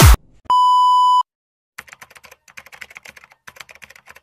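An edited-in electronic beep, one steady tone lasting under a second, sounds about half a second in, just after the music cuts off. It is followed by faint, rapid clicking like typing.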